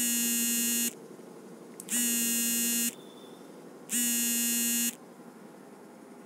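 Smartphone buzzing for an incoming call: a steady buzzing tone, about one second on and one second off, three times, then it stops.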